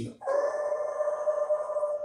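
A man's voice, through a handheld microphone, giving one long high held screech at a steady pitch, imitating the screeching of brakes and tyres before a crash.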